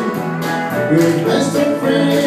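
Live country band playing an instrumental passage between sung lines: acoustic and electric guitars, electric bass, pedal steel guitar and fiddle, with sustained melody notes over strummed chords.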